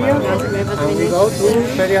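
A voice speaking over the running noise of a metro train carriage in motion.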